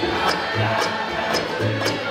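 Live bluegrass band playing an instrumental passage on banjo, resonator guitar, acoustic guitars, mandolin and upright bass, with a steady plucked beat and the bass repeating a low note about once a second.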